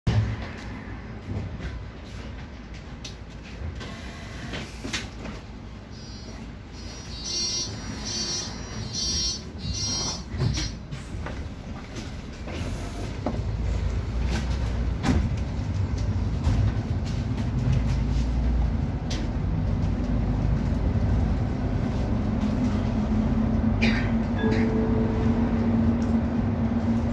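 Inside a city bus: clicks and a run of about five short high beeps from the door warning as the doors close, then the bus pulls away, its engine and road rumble growing louder from about halfway through, with a steady hum joining near the end.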